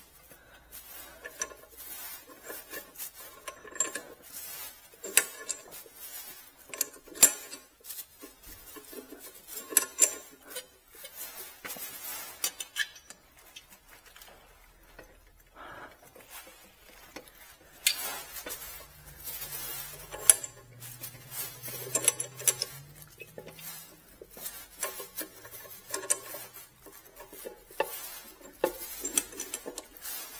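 Irregular light metallic clinks and knocks, a few of them sharper, as the factory chrome exhaust system of a BMW R nineT is worked loose and manoeuvred out past the frame and exhaust clamp.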